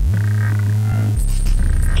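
Electronic music from a circuit-bent Incantor speech toy: a heavy low bass drone that drops in pitch a little past a second in, under buzzy, croaking, warbling synthetic tones.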